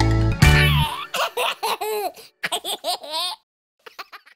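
A children's song ends on a held final chord, then cartoon voices laugh in a string of short, baby-like giggles for about two seconds.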